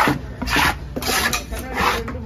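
A knife blade scraping in four even, rasping strokes, about one every half second or so.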